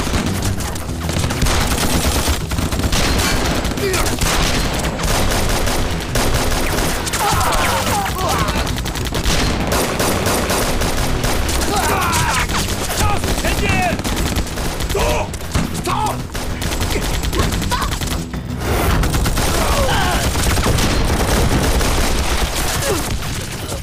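Rapid, continuous gunfire in a staged battle, shot after shot with no real pause.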